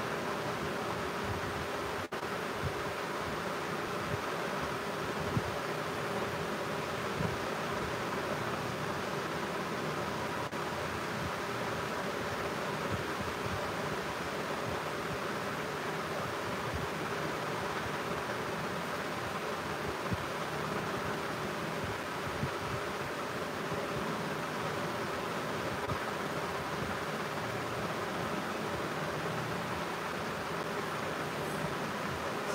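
Steady room noise: an even hiss with a faint humming tone, unchanging throughout.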